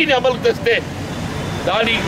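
A man speaking in Telugu in short phrases. A steady rumble of street traffic runs underneath and is heard on its own in the pause about a second in.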